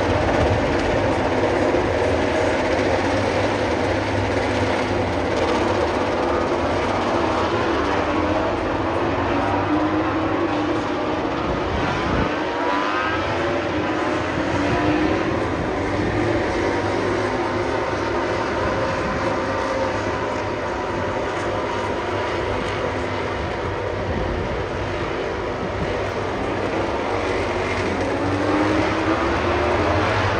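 MotoGP racing motorcycles running on the circuit out of sight, their engine notes climbing and falling in pitch through the gears as they accelerate and brake, several bikes overlapping over a steady drone.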